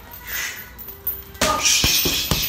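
Sharp hissed exhales of a boxer throwing punches in boxing gloves: a short hiss, then a louder one about one and a half seconds in. A couple of sharp knocks from the punching come with the second.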